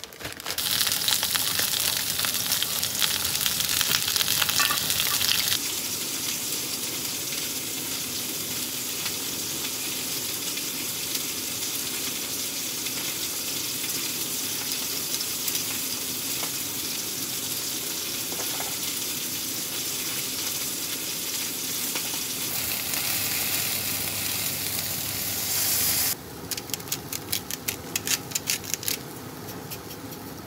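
Salmon fillets sizzling in hot oil in a frying pan, a steady loud hiss of spitting oil. Near the end the sizzle turns into rapid, irregular popping and crackling.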